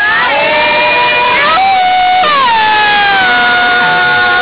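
Several voices singing a traditional Dawan work chant in long drawn-out notes that slide in pitch. About halfway in, one voice glides down into a long held note.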